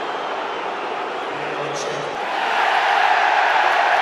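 Football stadium crowd noise, a steady roar that swells louder a little past halfway.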